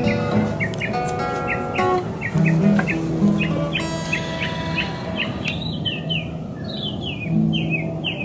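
Acoustic guitar played with held, ringing notes, with a bird chirping over it in short, falling calls repeated a few times a second.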